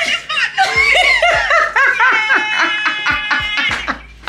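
A woman laughing excitedly in quick, high-pitched peals.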